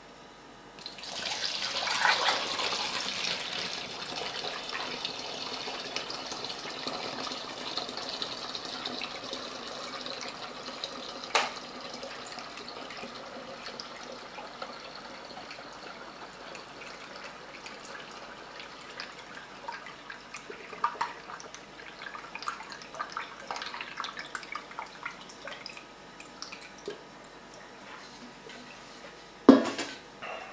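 Apple juice poured from a stainless steel pot through a plastic funnel into a 5-litre plastic bottle, a steady gushing stream that starts about a second in and thins toward the end into irregular dribbles and drips, filling the bottle with must over sugar. A sharp knock near the end.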